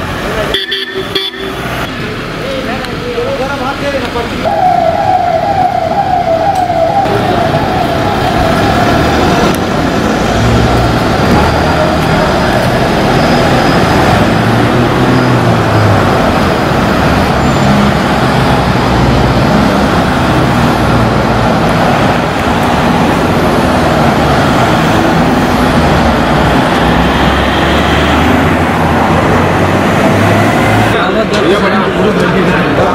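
A convoy of cars and SUVs driving past on a road, with engine and tyre noise throughout. About four seconds in, a siren warbles briefly, then fades out over the next few seconds.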